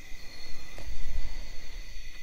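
Crickets chirping steadily in the background, over a low rumble on the microphone.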